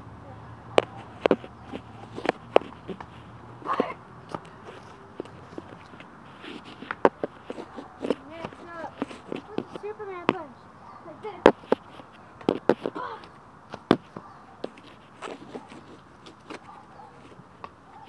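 Handling noise from a handheld camera: irregular sharp clicks and knocks scattered throughout, with faint talking in the background.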